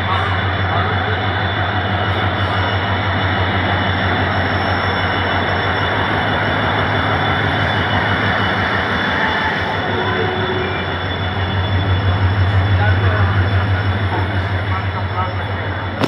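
EMD WDG4 diesel locomotive's 16-cylinder two-stroke engine working under load as it hauls a freight train past: a deep steady drone with the high steady whine of its turbocharger over it. The sound grows louder near the end as the freight wagons roll by.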